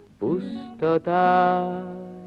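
A man singing a slow ballad to acoustic guitar: a short rising phrase, then a long held note that slowly fades.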